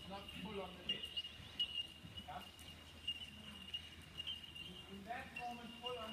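A steady high-pitched chirring, typical of insects, runs throughout. Faint voices come near the start and the end, and there are a couple of short sharp knocks in the first two seconds.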